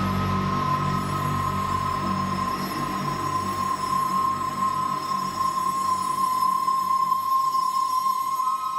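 Electronic title-card soundtrack: a sustained drone, one steady high tone held over a low hum.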